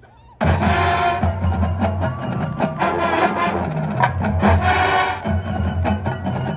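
Marching band of brass and drumline bursting into loud full-band music about half a second in, with heavy drum hits through the chord.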